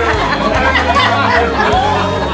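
Several people at a table chattering and laughing over each other, over the instrumental passage of a song.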